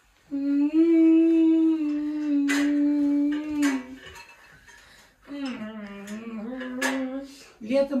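A person humming: one long, steady note of about three and a half seconds, then after a short pause a second, lower note that wavers. A few sharp clicks fall in with it.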